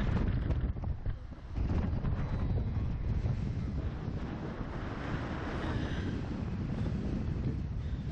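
Wind buffeting the microphone of a camera mounted on a swinging slingshot-ride capsule: a steady low rumble that dips briefly about a second and a half in.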